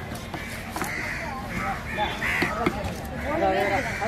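Crows cawing repeatedly, over background voices, with a couple of sharp knocks, the first about a second in and the second just past halfway.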